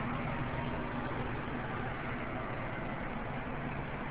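Steady background noise with a low hum.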